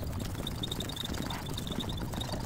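Hand scraper scraping old, hardened silicone caulk off a window frame in steady strokes, stripping the failed sealant by hand.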